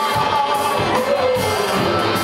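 Live band music with a singer's voice, recorded from within the crowd in a club.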